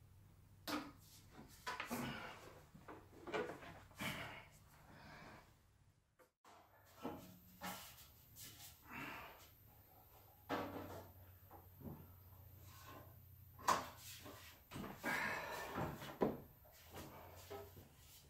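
Metal organ pipes being lifted by hand out of the toe board and rack board: irregular knocks, scrapes and clatters of pipe metal against wood, with short bursts of handling noise.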